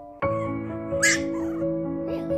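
Four-week-old Mi-Ki puppies whining and yipping, with one short, louder cry about a second in, over background music.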